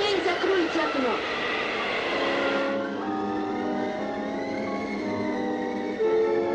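Cartoon soundtrack of a blizzard: a rushing, wind-like whoosh with howling glides. About three seconds in it gives way to sustained orchestral music with long held notes.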